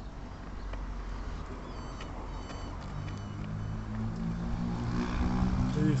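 A motor vehicle's engine running nearby, its hum getting louder over the last few seconds, over a low rumble on the microphone.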